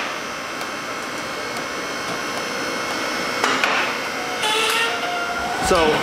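A steady mechanical whir with a high, even hum, like a motor or blower running, and a brief rattle or clatter about three and a half seconds in.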